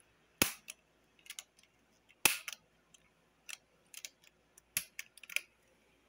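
Close-up ASMR tapping on an electric fan: about a dozen sharp, irregular taps and clicks on its plastic body and grille, with quiet gaps between. The loudest taps come about half a second in and just after two seconds.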